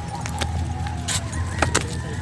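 Scattered sharp clicks and knocks of footsteps and carried gear on a rocky trail, several close together in the second half, over a steady low rumble.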